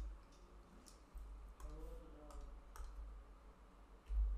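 Faint clicks from computer input devices, about half a dozen scattered irregularly over a few seconds, over a low steady hum.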